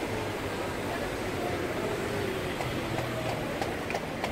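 Steady town-street background noise: a low traffic hum with faint, distant voices.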